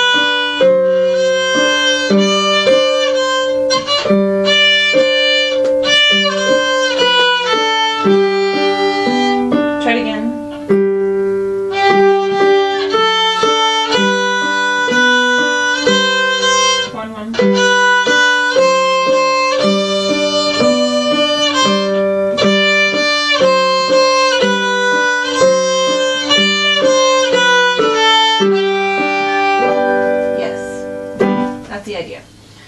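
Violin playing a beginner method-book exercise, a steady series of bowed notes with two short breaks, about ten and seventeen seconds in.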